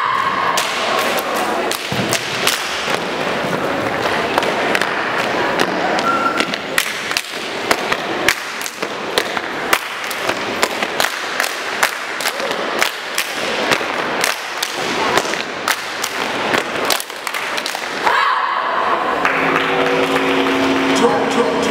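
A rapid, irregular run of sharp thuds and hits from a street dance routine's soundtrack over a steady din of crowd noise. Near the end the din drops and a pitched music track comes in.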